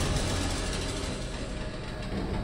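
A whoosh transition sound effect: a rushing noise, heaviest in the low end, that slowly fades away over the two seconds.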